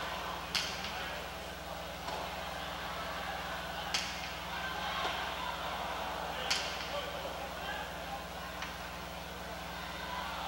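Jai-alai pelota striking hard, three sharp cracks about three seconds apart with a short echo after each, as the ball is thrown from the cestas and hits the fronton wall during a rally. Behind them is steady crowd chatter and a low steady hum.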